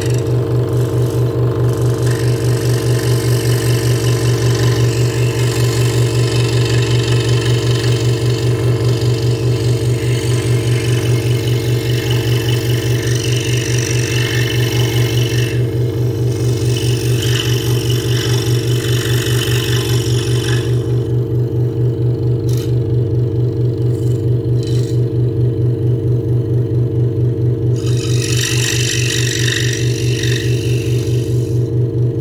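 Hegner Multicut 2S scroll saw running at a steady speed, its fine blade stroking rapidly up and down while cutting pierce work in a wooden blank. The hiss of the cut fades for several seconds past the middle and comes back near the end.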